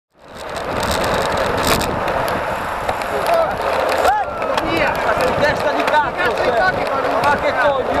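Steady rush of wind and tyre noise on a camera mounted on a road racing bike riding in a pack. From about three seconds in, riders' voices call out in short cries over it.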